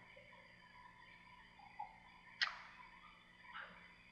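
Quiet room tone, broken by one short, sharp click about halfway through and a couple of softer taps around it.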